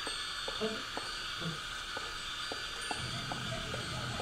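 About eight light, irregular taps over a steady high-pitched hiss with thin ringing tones.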